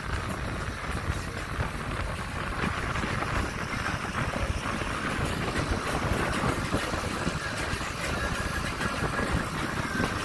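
Steady, even rumble of a catamaran under way on open water, a mix of the boat's motion, water along the hulls and wind on the microphone.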